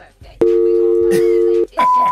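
Voicemail telephone tones between messages: a steady two-note tone lasting just over a second, then a short single higher beep near the end.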